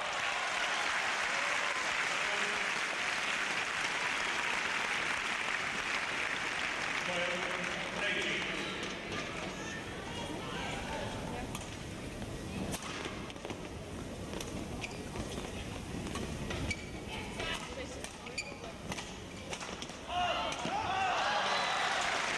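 Indoor arena crowd noise, then a badminton rally: sharp, scattered racket strikes on the shuttlecock and court sounds, with the crowd's voices rising near the end.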